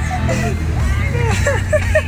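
Voices over the steady low running noise of a vehicle driving, heard inside its cab.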